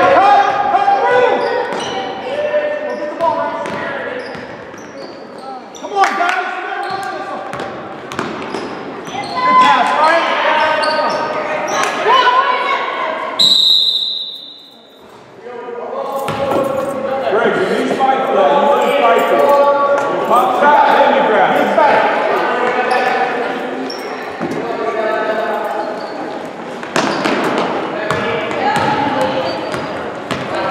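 Spectators shouting and cheering in a gym, with a basketball bouncing on the hardwood floor. A referee's whistle blows once about 13 seconds in, followed by a short lull before the shouting picks up again.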